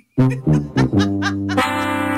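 Short music sting: a few quick notes, then a held chord from about a second in, marking the end of a round without a correct guess.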